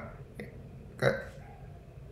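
A pause in a man's talk, broken about a second in by one short, sudden vocal sound from him that fades within half a second, with a faint click shortly before it.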